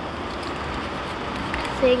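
Steady hum of road traffic in the background, with no distinct events.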